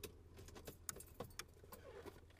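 Faint jangle of car keys and a few light clicks as the car's ignition is switched on, over a low steady hum.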